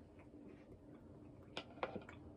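Faint sounds of a person eating: scattered soft ticks, with two sharper clicks near the end.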